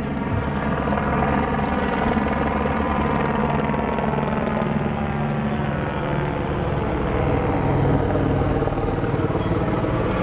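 Helicopter flying, a loud steady rotor and engine drone whose pitch sinks slowly over several seconds.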